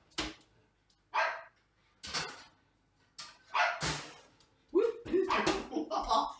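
A pet dog barking in short, repeated barks, about one a second at first and closer together near the end, set off by the oven timer's beeping.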